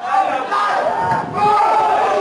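Several people shouting at once during a football match as play goes in on goal, starting abruptly and swelling again about a second and a half in.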